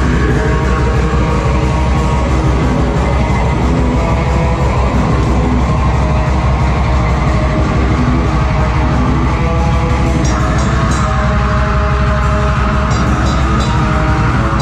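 Live rock band playing loud and heavy, with distorted electric guitar, bass guitar and drum kit, and a strong steady bass. The guitar part shifts to higher notes about ten seconds in.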